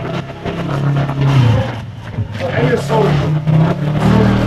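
A small motorcycle engine running close by in a narrow alley, a steady low drone that shifts in level, with voices of passers-by over it.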